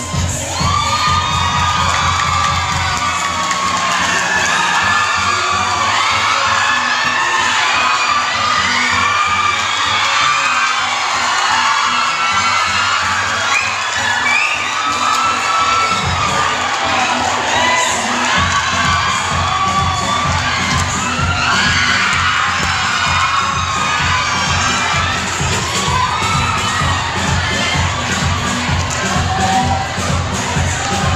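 Audience shouting and cheering loudly, many voices at once, over dance music with a steady beat. The music's bass drops back from about three seconds in and returns strongly about halfway through.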